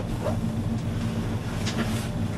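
Train engine running with a steady low drone, heard from inside the driver's cab, with a couple of faint clicks near the end.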